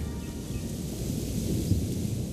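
A low, even rumble in the film's soundtrack, without clear musical tones.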